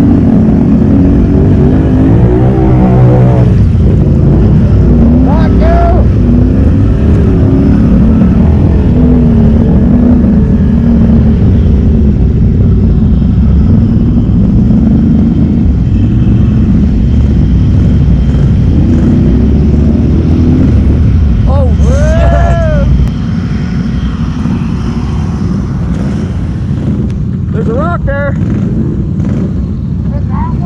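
Can-Am Renegade ATV's V-twin engine running loud and hard under load, working up a muddy hill climb. The engine drops to a lower level about 23 seconds in.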